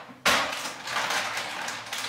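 Plastic snack bag crinkling and rustling as it is picked up and handled, a dense crackle that starts about a quarter second in and carries on throughout.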